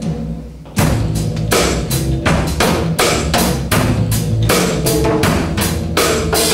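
Live band playing the instrumental intro of a song: a sustained low note holds at first, then about a second in the drum kit and the rest of the band come in with a steady beat.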